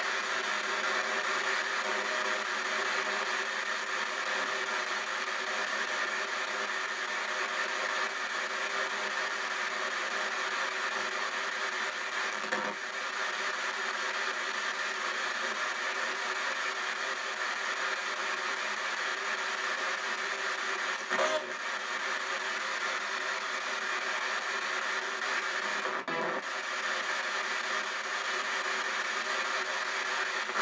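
P-SB7 spirit box sweeping through radio stations, played through stereo speakers: a steady hiss of radio static, broken by a few brief blips.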